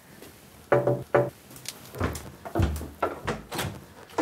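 Two quick knocks on a glass-panelled uPVC front door about a second in, followed by a few scattered thuds and clicks as the door is opened.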